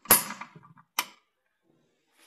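Two sharp clicks about a second apart as the jaws of a Schopper-type folding endurance tester are dragged backward; the first is the louder and rings on briefly.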